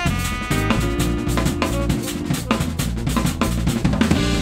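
Small jazz band playing live: a drum kit played busily with snare and bass-drum hits, under electric bass, electric guitar and saxophone.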